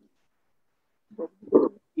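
Dead silence for about a second, then a man's voice over a video call, making short drawn-out hesitation sounds that lead into speech.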